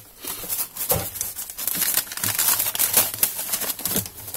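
Glossy paper wrapping crinkling and rustling with many quick crackles as hands pull at the band and the paper of a flyer-wrapped package.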